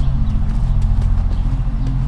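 Electronic music: a loud, sustained low synth drone with a higher note pulsing on and off, and light, sharp clicks scattered over it.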